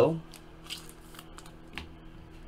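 Fleer Ultra Spider-Man trading cards being handled: several short, light flicks and taps as cards are slid off the pack and set down on a stack.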